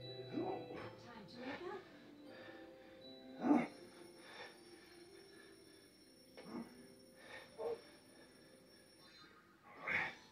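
A children's TV show playing in the background, faint music and voices, with a short louder voice sound about three and a half seconds in.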